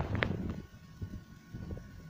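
Handling noise from a phone being moved: a few knocks and rubbing on the microphone near the start, then a faint steady hum.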